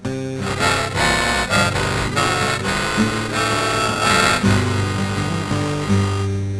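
Acoustic guitar strummed steadily through the instrumental introduction of a folk song, before the singing comes in.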